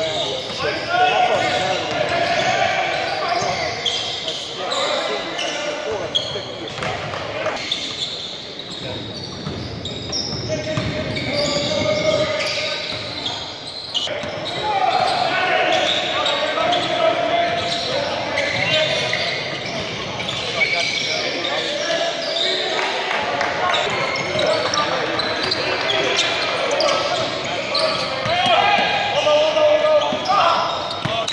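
A basketball game in a gymnasium: a ball bouncing on the hardwood court amid the voices and shouts of players and spectators, all echoing in the hall.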